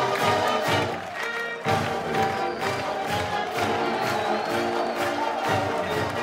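Brass marching band music with a steady drum beat, over a cheering crowd.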